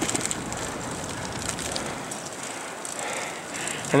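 Bicycle being ridden along a city street: a steady, even rushing noise of tyres rolling on the pavement and air moving past the microphone.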